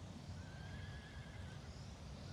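A faint horse whinny: one wavering call lasting about a second.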